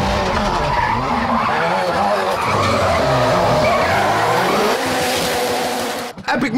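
Ford Fiesta rally car drifting, its engine revving up and down while the tyres squeal and skid.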